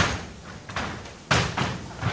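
Two sharp impacts from karate sparring on a wooden dojo floor, bare feet stamping and strikes landing; one at the very start and a louder one about a second and a quarter later.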